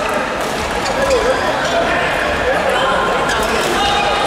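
Indistinct chatter of many voices filling a sports hall, with a few light clicks of table tennis balls.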